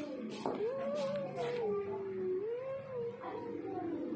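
Young cat meowing in one long, drawn-out, wavering cry whose pitch rises and falls, lasting about two and a half seconds.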